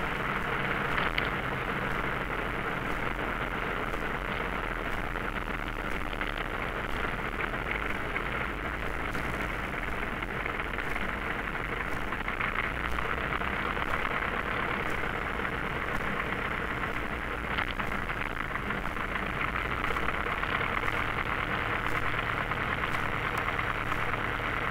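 Light aircraft's piston engine and propeller running steadily at low power as the plane rolls along the runway after landing, heard inside the cockpit as an even drone.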